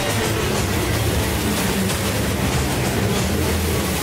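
A steady, dense rumble from a cartoon sound effect of a ball rolling down a snowy mountainside, with background music underneath.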